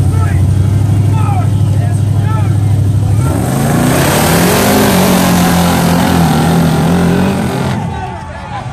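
Off-road tug-of-war rigs' engines running at a steady high idle, then revving up about three seconds in to full throttle for about four seconds, with tires spinning on dirt, before the throttle comes off near the end.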